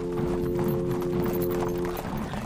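Hoofbeats of several horses as a group of riders moves past, over held notes of background music.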